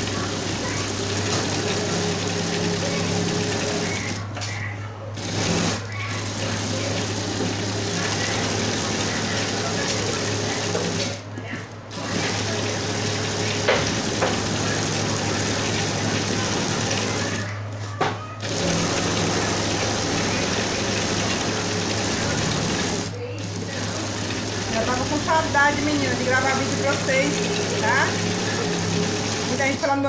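Electric sewing machine with a ruffler attachment running steadily as it gathers and stitches a knit-fabric ruffle onto a rug, stopping briefly about every six seconds as the work is turned.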